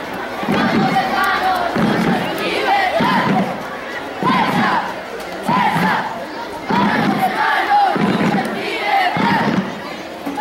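A group of voices shouting in a rhythmic chant, one shout about every second, over the noise of a crowd.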